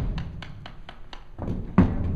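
A horse's hooves thudding on a trailer floor as it steps forward into the trailer: two heavy thuds, one at the start and one just before the end, each with a short low rumble after it.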